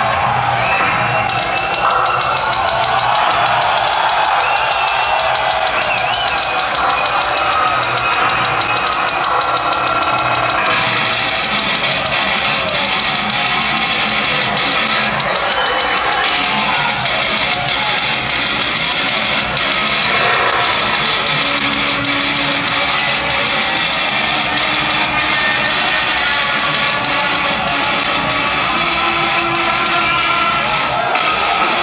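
Industrial metal band playing live: drum kit and distorted electric guitars, loud and steady, with the full band coming in about a second in.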